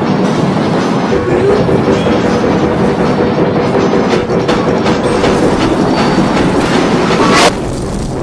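Several production-logo soundtracks layered and distorted by video effects into a dense, continuous rattling noise with a steady hum-like tone running through it. It cuts off sharply about seven and a half seconds in, leaving a quieter wash.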